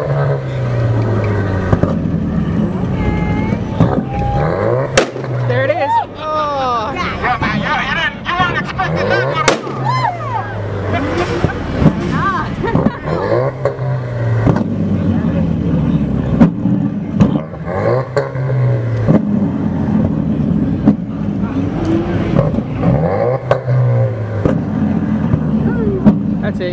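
Ford Mustang engine revved repeatedly while parked, the exhaust note climbing and falling back about seven times, with voices over it.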